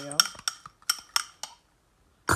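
A metal fork clinking against the side of a small glass bowl while stirring a thick egg-replacer and sour cream mixture: about six quick, ringing clinks that stop about a second and a half in.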